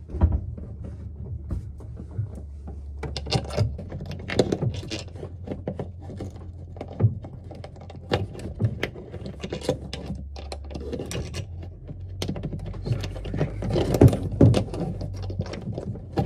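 Hands working a Rosen sun visor mount and its bolts against the cabin ceiling: irregular small clicks, knocks and rustling, busiest twice and loudest near the end, over a low steady hum.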